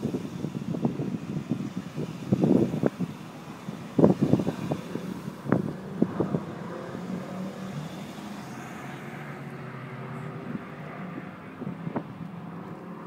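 Mercedes-AMG SLK 55 V8 track cars running at low speed close by, with several short loud bursts over the first six seconds. Near the end the engine note rises gently as a car pulls away.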